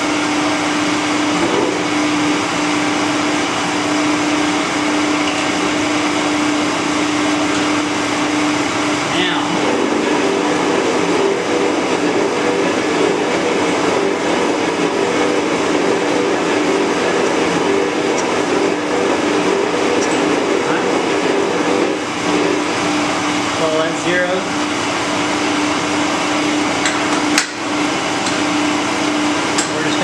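Steady machine running noise: a constant low hum with an even whirring over it, typical of an electric motor drive. It thickens slightly about a third of the way in, and there is a brief drop and a click near the end.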